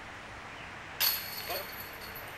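A disc golf putt going into a chain basket: a sudden jingle of the metal chains about a second in, ringing briefly as the disc drops in for a made putt.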